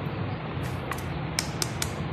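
A knife blade tapped against an egg's shell to crack it: a few short, sharp clicks, one about a second in and three close together near the end, over a steady low hum.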